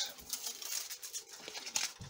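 Sheet of gold hot-press tooling foil rustling as it is peeled and lifted off a cover along with a card template, with a few small clicks.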